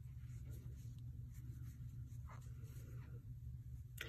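Faint scratching of yarn sliding over a metal crochet hook as loops are pulled up for a cluster stitch, over a low steady hum.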